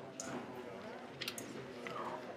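Indistinct voices talking in the background, with a quick cluster of sharp clicks just past the middle.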